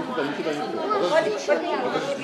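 Indistinct chatter of several people's voices talking over one another.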